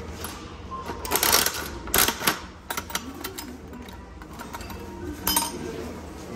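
Coin-operated capsule-toy (gacha) machine being worked by hand: the metal dial is cranked, giving two bursts of ratcheting clatter about one and two seconds in, then scattered clicks, and a single sharp clack about five seconds in.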